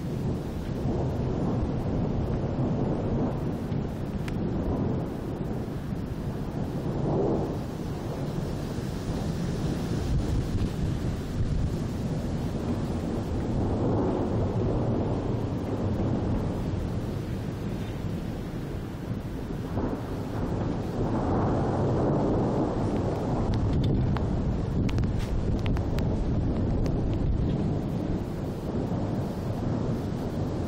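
Continuous rolling thunder: a low rumble that never stops, swelling louder and easing off every few seconds.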